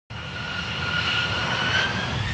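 Jet airplane sound effect: a steady engine rush with a whine that rises slowly in pitch.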